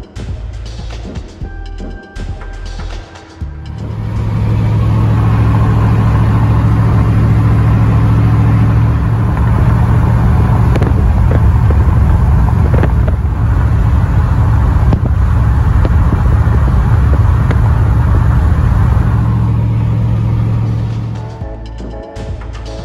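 LS V8 of a swapped Pontiac Firebird running at a steady speed on the road, a steady low hum under loud rushing road and wind noise. It begins about four seconds in and fades out just before the end.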